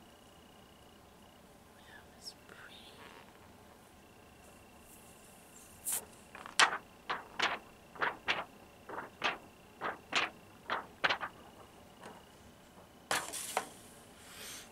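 A quick, uneven run of about a dozen light, sharp taps, roughly three a second. They start about halfway through and stop shortly before a brief rustle near the end.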